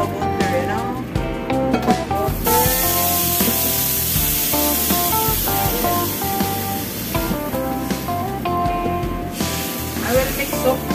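Background music over a steady hiss of running water that starts suddenly about two seconds in and stops about a second before the end, as the wok is filled with water.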